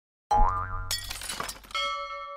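Edited-in sound effects for a subscribe-button animation. A sudden springy boing with a rising pitch over a low thud comes first, then a noisy crash-like swoosh about halfway through. Near the end a bell chime rings out.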